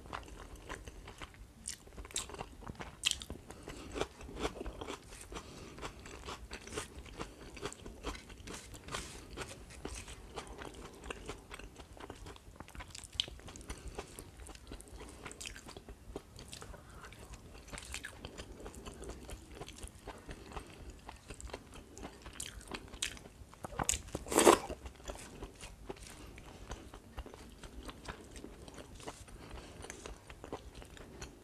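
Close-miked eating sounds of a person eating rice and curry by hand: chewing, small wet clicks and crunches, and fingers mixing rice on a banana leaf. One much louder mouth sound comes near the end, about 24 seconds in.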